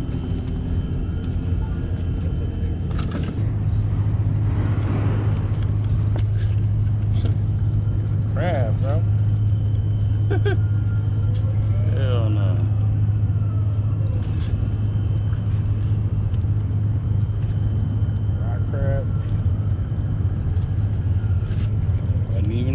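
A steady low engine hum that steps up in level a few seconds in and holds there, under brief scattered voices and a single sharp click.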